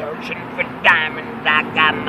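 A man's voice making a few short pitched vocal sounds between rap lines, over a faint steady low hum, with a sharp click right at the start.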